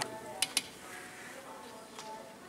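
Two quick clicks about half a second in, an elevator hall call button being pressed, then quiet lobby room tone.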